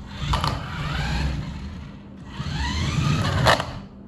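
Toy jeep's small electric drive motor and plastic gearbox whining in two runs, the second rising in pitch as it speeds up. A sharp click comes about three and a half seconds in, just before the whine cuts off.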